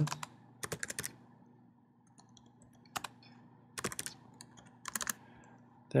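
Computer keyboard typing in a few short bursts of keystrokes, with quiet gaps between them.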